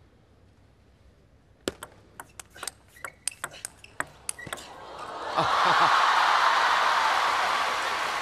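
Table tennis rally: about a dozen sharp clicks of the celluloid-type ball off bats and table in about three seconds. Then the crowd breaks into loud cheering and applause as the point is won.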